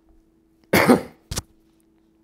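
A man coughs once, just under a second in, followed by a brief sharp second sound.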